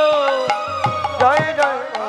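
Devotional kirtan music: a held melodic note glides slowly down, then turns into quick bending ornaments. Sharp hand-drum strokes and cymbal hits cut through it, with a low drum tone in the middle.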